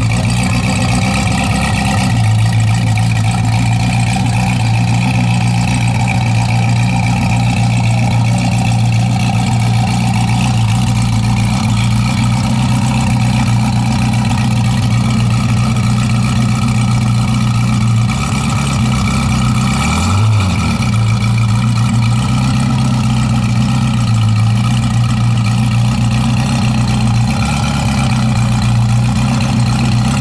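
Zenvo supercar's V8 idling steadily, with one short blip of the throttle about two-thirds of the way through.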